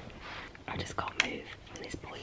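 A young woman whispering in short, breathy phrases.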